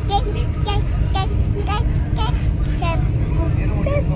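Steady low rumble of the Vande Bharat Express electric train running at speed, heard from inside the coach. A voice comes through in short phrases about twice a second.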